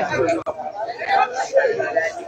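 Speech: voices talking, which the transcript did not write down.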